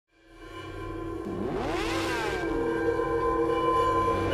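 Logo intro sound effects fading in from silence: a held droning chord, with pitch sweeps that rise and fall across one another from about one to two and a half seconds in.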